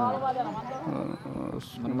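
Quieter speech from the men in the street interview, in a lull between louder answers, with a short hiss about one and a half seconds in.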